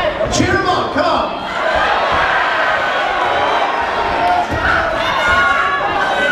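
Crowd in a large hall shouting and calling out over one another during a boxing bout, with a sharp thud about half a second in.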